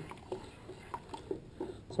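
Wooden stir stick stirring thick plaster slurry in a plastic bucket: faint, scattered small scrapes and clicks.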